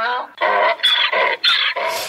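A donkey braying: a drawn-out call followed by three quick repeated calls about half a second apart.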